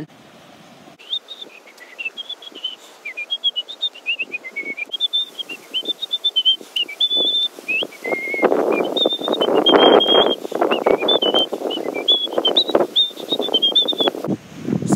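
A high, pure whistled tune of held and sliding notes that starts about a second in and keeps going. From about eight seconds in, a louder rustling noise of wind or movement runs under it.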